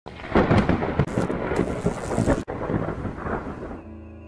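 Thunderstorm: thunder rumbling over rain, with a sudden brief dropout a little past halfway. It fades out as soft music comes in near the end.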